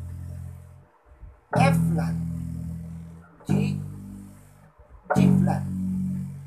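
Four-string electric bass guitar played one note at a time. A note from just before fades out about a second in, then three more are plucked about two seconds apart, each at a slightly different pitch and ringing down.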